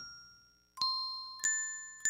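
Sparse bell-like chimes in background music. One note dies away to near silence, then two single chimes about two-thirds of a second apart each ring out and fade.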